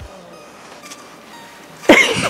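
A horse snorts once, sharply, near the end; before that only faint background sound.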